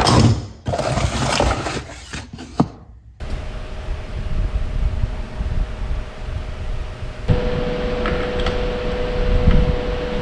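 Handling noise: a cardboard pedal box rustles and scrapes, with a click or two. After a cut comes a steady low hum with a faint tone, and a stronger steady tone joins about seven seconds in, with faint ticks of metal as a platform pedal is fitted to the crank arm.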